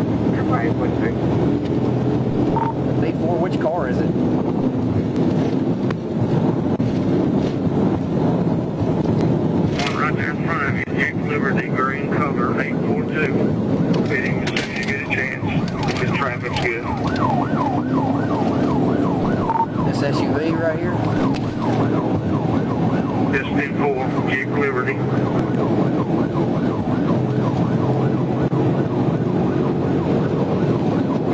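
Police patrol car driving at high speed, with a steady engine, road and wind noise in the cabin. A siren wails over it, plainest through the middle of the stretch.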